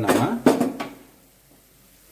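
A voice speaking briefly for under a second, with one sharp click about half a second in, then low room tone.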